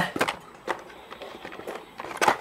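Handling of a white cardboard inner box and a clear plastic blister tray: a few faint taps and rustles, one just after the start and another under a second in.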